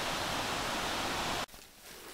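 River Braan rushing over rocky rapids in a gorge: a steady, even hiss of running water that stops abruptly about one and a half seconds in.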